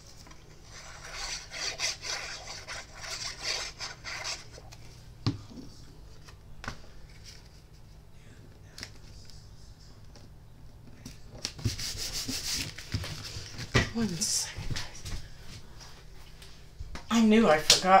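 Hands rubbing and smoothing a freshly glued cardstock piece flat onto a paper box: two stretches of dry paper rubbing, with a few light taps between them.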